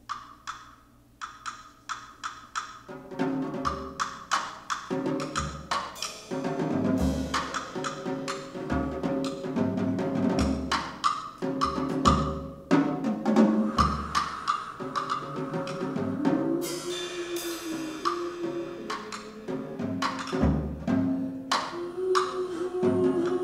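Jazz drum kit playing a driving rhythmic pattern of drum and rim strikes, joined about three seconds in by a hollow-body electric guitar. There is a cymbal wash about two-thirds of the way through.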